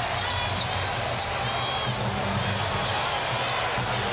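Arena crowd noise during live basketball play, with the ball dribbling on the hardwood and a few short high sneaker squeaks.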